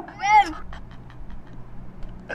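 A child crying: one short, high wail that rises and falls, lasting about half a second at the start.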